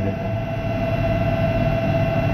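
A steady electrical hum with a constant whining tone over a low rumble.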